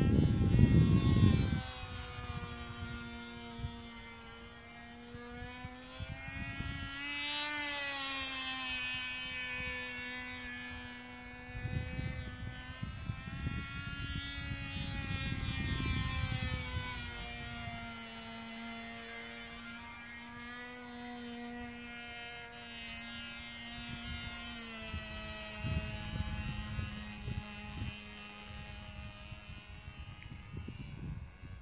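Cox .049 Tee Dee two-stroke glow engine on a small model airplane running steadily in flight, a high, even engine note whose pitch rises and falls as the plane moves toward and away from the listener. Low rumbles of wind on the microphone come in at the start, in the middle and near the end.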